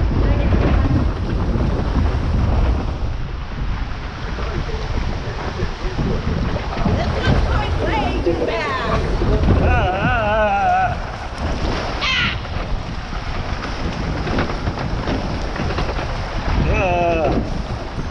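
Log-flume boat travelling along its water channel: rushing, splashing flume water and wind buffeting the microphone, with voices wavering through the noise about halfway through and again near the end.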